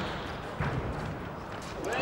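Squash court sounds during a short rally: players' quick footsteps and the ball's hits, under a low murmur of crowd voices.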